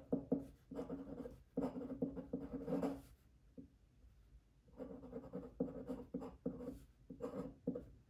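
Glass dip pen scratching across paper in quick handwriting strokes. There are two runs of strokes, one per word, with a pause of about a second and a half between them.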